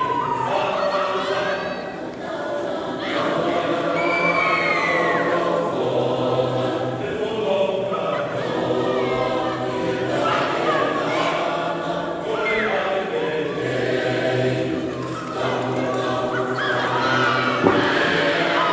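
A choir singing in harmony, several voices together with some sliding notes, running steadily throughout.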